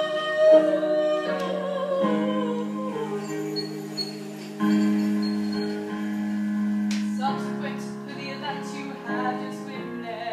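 Live musical-theatre music: female voices singing in harmony over an accompaniment, with long held notes at first and shorter, moving phrases in the last few seconds.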